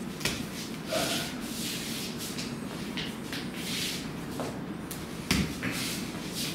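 Wing Chun partner drill: clothing rustles and feet shuffle as arms and hands meet, with sharp slaps of contact. The loudest slap comes a little after five seconds in.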